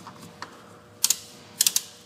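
Coolant reservoir cap being screwed on until its ratchet clicks, which shows it is fully tightened. There are two quick clicks about a second in and a short run of three more half a second later.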